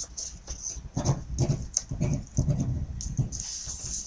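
Pen scratching on paper in a quick run of short, uneven strokes as a signature is written by hand.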